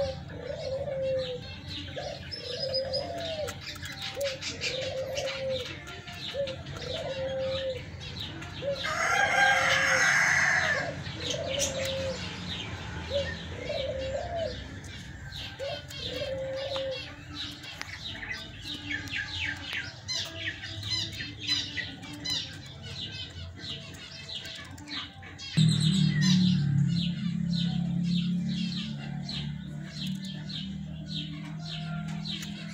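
White Leghorn hens in a wire pen: short low calls about once a second through the first half, with high chirping throughout. About nine seconds in comes a loud two-second burst of squawking and wing flapping as the hens scuffle.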